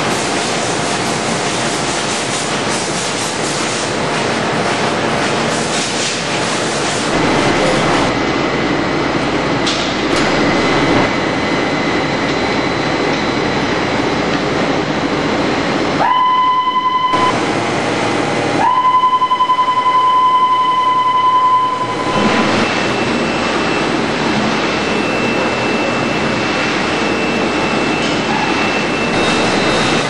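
Asahi AP-128L automatic die-cutting press running: a continuous mechanical clatter and rumble from the press and its suction sheet feeder. Around the middle a steady high beep sounds twice, once for about a second and then for about three seconds, and the machine noise drops away while it lasts.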